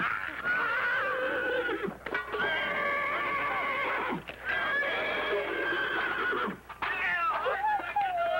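Horses whinnying over and over in a series of long calls, each about two seconds, as they break and run in alarm.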